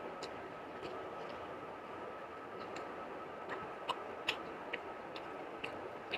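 Eating sounds from a meal of rice and curry eaten by hand: sparse, irregular wet clicks of chewing and of fingers working the food, the sharpest about four seconds in. They sit over a steady background hiss with a faint high steady tone.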